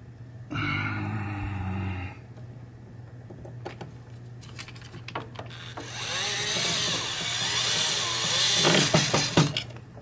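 Cordless drill-driver driving screws to fasten a pinball match unit to the wooden backboard. There is a short run about half a second in, then a longer, louder run from about six seconds that ends in a few sharp clicks as the screw seats.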